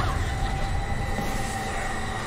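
Electricity crackling and sparking from a ceiling fixture, a loud, dense, steady hiss with a few thin whining tones running through it.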